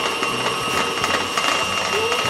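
KitchenAid tilt-head stand mixer running steadily at about medium speed, its flat beater working royal icing in a stainless steel bowl; the motor and gearing give a steady whine of several tones.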